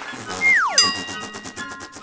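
Musical transition sting: a tone slides sharply downward, then a bright chime rings on with tinkling sparkle over it.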